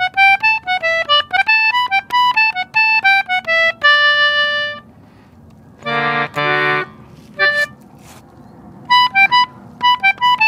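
Concertina playing the answering phrase of a newly composed jig in G major: a quick run of short, bright notes ending on a held note, a pause, then two held chords about six seconds in, and a fresh run of notes starting near the end.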